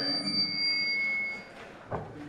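Steady high-pitched ringing tones over a low hum, cutting off about one and a half seconds in, followed by a single short knock near the end.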